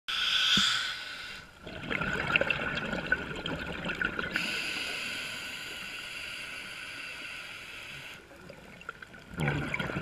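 Scuba regulator breathing heard underwater: a stretch of bubbling exhaled air, then a long hissing inhalation through the regulator, and bubbling again near the end.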